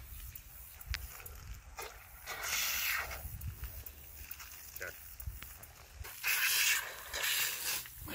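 Garden hose spraying water onto a lathered dog's coat to rinse off the shampoo, in several hissing bursts, the loudest near the end.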